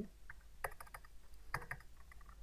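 A few faint keystrokes on a computer keyboard, in small quick clusters, as an amount is typed in.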